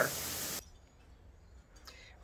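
Steady hiss that cuts off abruptly about half a second in, followed by near silence with a faint low rumble.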